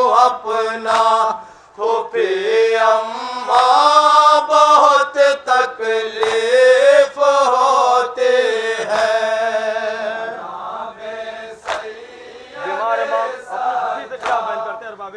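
Men's voices chanting an Urdu noha, a melodic mourning lament, with a few sharp slaps of hands striking chests (matam) scattered through it.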